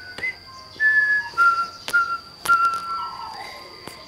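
Rubber squeeze-toy elephants squeaking as they are squeezed: about five short, whistle-like squeaks, each held a fraction of a second, with a few light clicks of handling.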